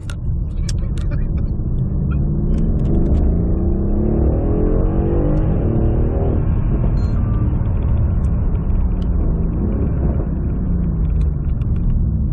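Mercedes-Benz W218 CLS63 S AMG's twin-turbo V8, remapped to about 710 hp and heard from inside the cabin, pulling hard under full throttle and climbing steadily in pitch through a shift from second to third. About six seconds in it breaks off and the note falls away as the car slows.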